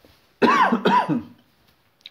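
A man coughs twice in quick succession, about half a second in.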